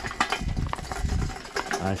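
Metal clicks and clunks of a floor jack being worked by its handle under a race car, with a low rumble in the first second and a half.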